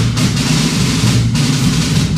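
Drum band performing live: a dense, continuous mass of drums and percussion, loud and heaviest in the low range, with no break.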